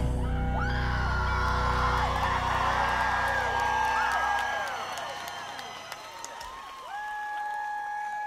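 Concert crowd cheering, whooping and whistling while the band's final chord rings on and fades out about four and a half seconds in. Near the end a steady held note comes in.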